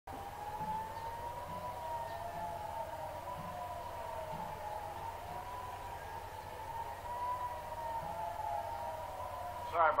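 Air raid sirens wailing, their pitch rising and falling slowly; more than one siren sounds at once, out of step with each other.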